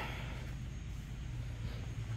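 Steady low background hum of room tone, with no distinct knocks or clicks.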